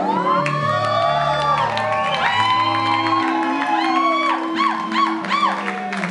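Live rock band holding sustained low chords while high sliding tones rise and fall in repeated arches over them, with a crowd cheering and whooping.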